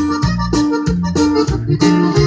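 Norteño band playing an instrumental passage between vocal lines: accordion, acoustic guitar, electric bass and drum kit in a steady, bouncing beat.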